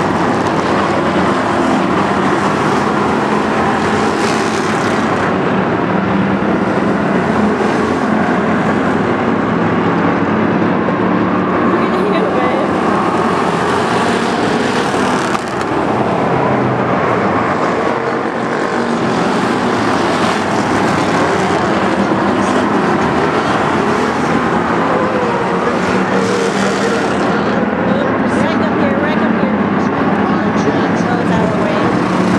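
Several stock race cars running laps of a short paved oval, a continuous loud engine drone from the pack, with a brief dip about halfway through.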